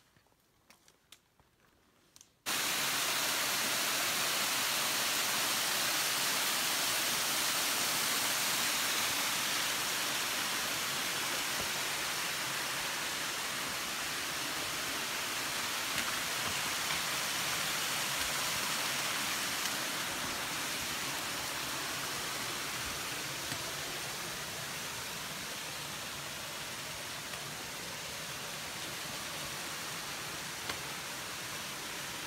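A few faint taps, then about two and a half seconds in a loud, steady, even hiss starts abruptly and holds, easing slightly toward the end.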